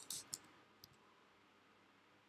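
A quick run of three or four sharp clicks from computer input in the first half second, and one more click a little later, over near silence.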